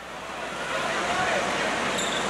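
Heavy rain falling on a gymnasium roof, heard from inside as a steady rushing hiss that grows slightly louder, with faint crowd voices under it.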